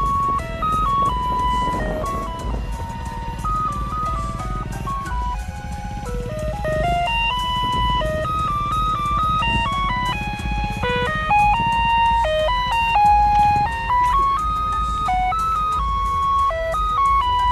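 Ice-cream seller's electronic jingle: a simple melody of single clean notes stepping up and down, played on and on, over a low steady rumble.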